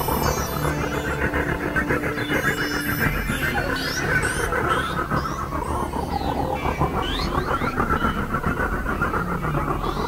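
Experimental electronic synthesizer noise music: a dense, steady drone with held low notes under a rough band of tone, and short high squealing glides that rise and fall, clustered through the middle.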